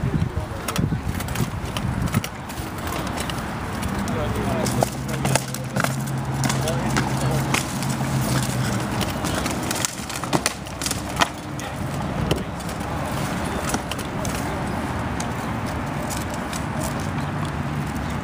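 Irregular sharp knocks and clacks of rattan sword and spear blows landing on a shield and armour during SCA armoured sparring, with a low steady hum under the blows from about four seconds in to nine.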